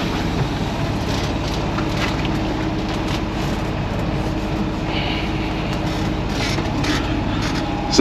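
Semi-truck's diesel engine idling steadily while it warms up, heard from inside the cab as an even low hum.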